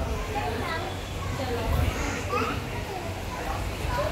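A young child's voice and background chatter of people in a café.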